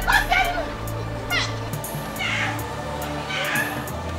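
Background film music with sustained low notes and a light ticking beat, overlaid by several wavering high, cry-like vocal sweeps.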